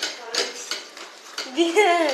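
Plastic ride-on toy clattering and clicking as it rolls over a tiled floor. A child's high voice calls out near the end.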